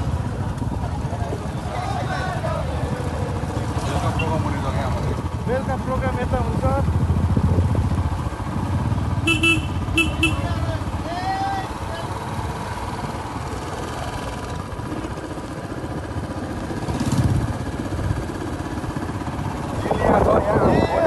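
Motorcycle engine running steadily as the bike rides along, a low rumble with road and wind noise. A vehicle horn beeps twice, briefly, a little past the middle.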